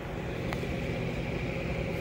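Electric fans running with a steady hum and a faint high whine, powered by a Bluetti AC200MAX portable power station under load; one light click about half a second in.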